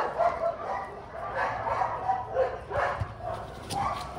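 Dogs barking in a scatter of short, fairly faint barks.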